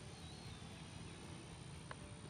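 Faint outdoor background noise: a low steady rumble and hiss, with a faint brief high chirp early on and a small click near the end.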